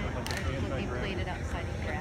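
Indistinct voices talking in a large gymnasium, with one sharp click about a quarter second in.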